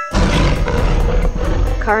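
Dinosaur roar sound effect: a loud, rough roar lasting nearly two seconds, played for a toy Carnotaurus figure.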